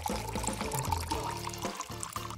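A thin stream of water pouring and splashing steadily into a small glass bowl, with background music.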